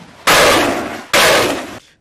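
Heavy machine gun firing two loud bursts, each about two-thirds of a second long, with a short pause between them.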